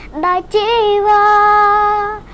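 A high voice singing solo with no instruments heard: a short syllable, then one long held note from about half a second in, wavering at first and then steady.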